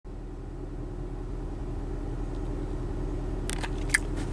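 Steady low hum of a car's running engine heard inside the cabin, with two short clicks near the end.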